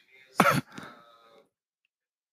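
A person clearing their throat once, sharply, about half a second in, with a fainter rasp trailing off just after.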